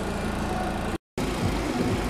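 Steady low hum, broken by a brief total dropout about a second in. After the dropout, the antique Westinghouse vending-machine refrigeration compressor is running, just cycled back on by its thermostat once the cabinet had warmed to about 42 degrees after defrosting.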